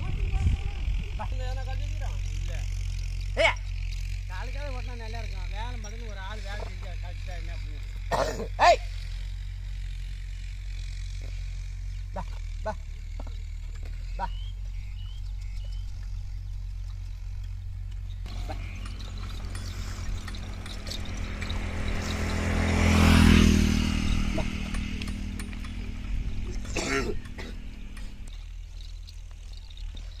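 A man calls "Va! Va! Va!" to drive a yoked pair of bullocks pulling a leveling board across ploughed soil, over a steady low rumble, with a few more wavering calls a few seconds later. In the second half a passing engine swells to its loudest a little past the middle, then fades.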